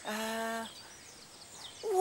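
A character's voice holds a short, steady hum at the start, then after a pause a falling 'whee' begins near the end.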